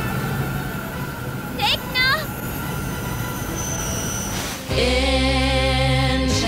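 Animated-series sound effects and score: a dense, rushing magical texture with two quick rising sweeps about two seconds in. At about five seconds it gives way to a held electronic chord whose upper tones waver in pitch over a steady low drone.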